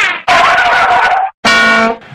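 A loud, wavering, voice-like cry, then a short steady buzzing tone. Each starts and stops abruptly, like sound-effect clips cut together.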